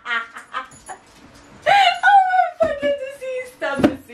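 Two women laughing hard: quick bursts of laughter, then a loud, long laughing wail about two seconds in that slowly falls in pitch, with a thud near the end.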